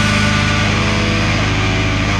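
Hardcore punk band recording with distorted electric guitar carrying the music. The bright top end thins out here and returns shortly after.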